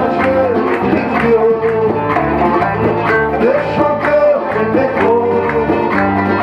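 A live band playing Berber (Kabyle) pop: acoustic and electric guitars over bass and a hand drum keeping a steady beat, with a melody line that slides up and down in pitch.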